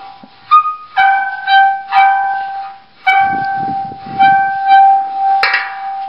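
Water gong, a metal basin holding water, sung by rubbing wet palms on its rim: one ringing tone with overtones that swells again with each stroke about once a second, under the low rasp of hands on the metal. A sharp knock about five and a half seconds in.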